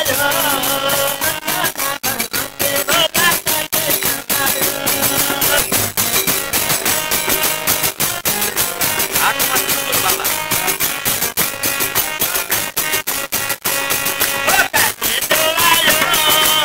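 A group of people singing together, with rhythmic hand clapping and a shaker-like rattle keeping the beat.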